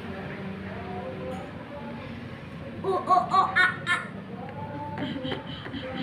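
A child laughing in a short run of giggles about three seconds in, over a quiet background.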